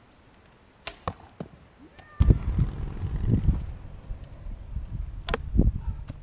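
An arrow shot from a self-made bow: a sharp snap of the string's release about a second in, followed by a couple of quick clicks. From about two seconds in, loud low rumbling noise takes over, and another sharp click comes near the end.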